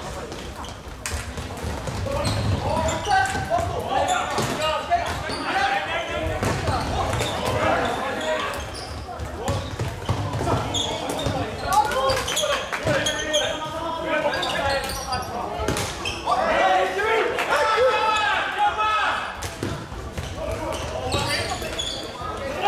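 Floorball play in a sports hall: repeated sharp clacks of sticks and the plastic ball on the court, mixed with players' shouts.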